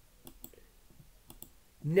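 Computer mouse clicking: a few sharp, light clicks in two small clusters about a second apart.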